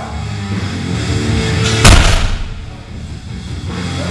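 A heavily loaded barbell with rubber-coated plates set down or dropped onto rubber gym flooring after a deadlift lockout: one heavy thud just under two seconds in. Rock music plays throughout.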